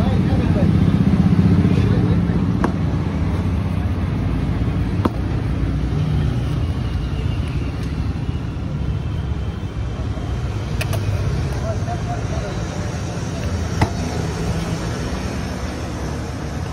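Street traffic noise: a steady low motor-vehicle rumble, loudest in the first couple of seconds, with background voices. A few sharp light clicks sound now and then.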